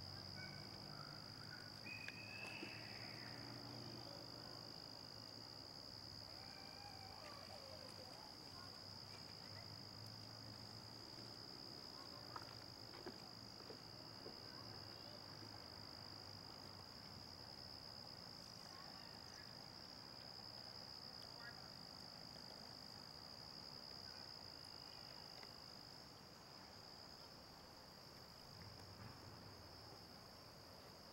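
Faint, steady chorus of crickets: one high, unbroken trill.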